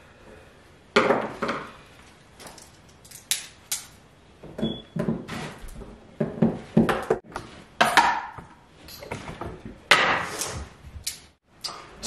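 Metal paint can being pried open and handled on a wooden floor: a run of irregular clicks and knocks from the tool on the lid and rim, the can set down and paint poured into a plastic paint tray, with a few louder knocks near the end.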